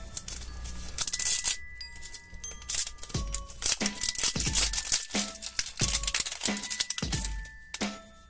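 Plastic wrapper crinkling and tearing in irregular bursts as a Pikmi Pops lollipop toy package is unwrapped by hand, over steady background music.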